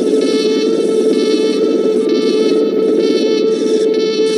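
Sci-fi cartoon sound effect for the starship's engine tubes: a loud, steady electronic hum with a higher buzzing layer that pulses on and off about twice a second.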